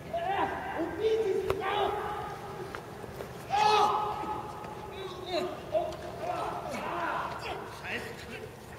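People's voices calling out and talking, with one sharp knock about a second and a half in.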